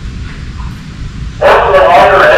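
A low rumble, then about 1.4 s in a loud voice over a loudspeaker starts the carousel's pre-ride safety announcement.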